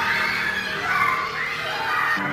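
A group of children's voices chattering and calling out together in a gym hall as they play.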